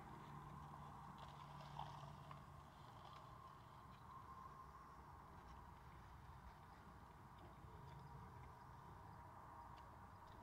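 Near silence: quiet room tone inside a car, with a faint low hum and one small click just before two seconds in.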